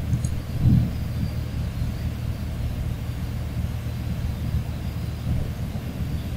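Low, steady background rumble on the microphone, with a single computer mouse click just after the start.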